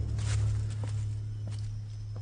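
A low held note from the soundtrack music fading away, with a few light footsteps crunching on the forest floor.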